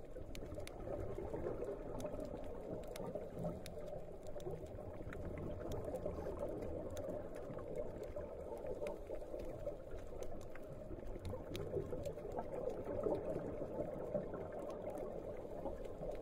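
Steady, muffled underwater noise picked up by a submerged action camera, with scattered faint clicks.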